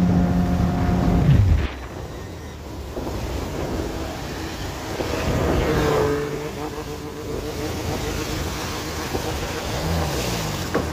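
Outboard jet motor on a jon boat running steadily, then throttled back about a second and a half in, its pitch and loudness dropping sharply. A second boat's outboard then runs close alongside, with the rush of spray and wake over shallow water.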